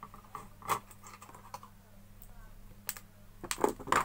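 Clicks and knocks of plastic electric-iron parts being handled on a workbench: a few scattered clicks, then a louder cluster of knocks near the end.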